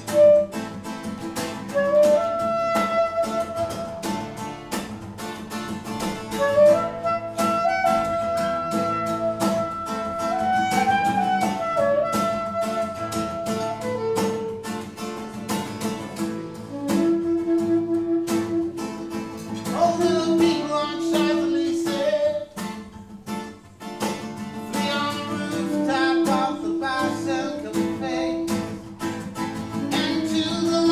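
An acoustic guitar and saxophone duo playing a slow, chilled instrumental. The saxophone carries the melody in long held notes over the guitar's plucked chords.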